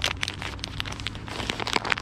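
A plastic snack bag of cashews crinkling as it is handled and shaken out, in a quick run of small crackles over a faint low hum.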